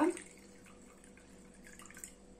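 Faint trickle and drips of soaking water poured off soaked poppy seeds from a glass bowl into a ceramic bowl.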